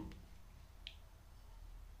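Near silence: a low, steady room hum with a single faint click a little under a second in.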